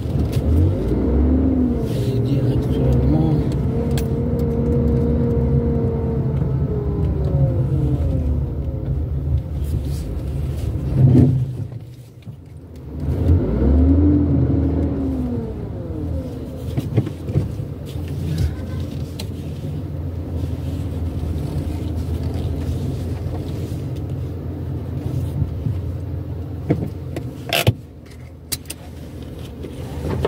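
Car engine running during slow driving in town traffic, heard from inside the cabin, its pitch rising and falling as the car speeds up and slows. The sound drops away briefly about twelve seconds in, and a few sharp clicks come near the end.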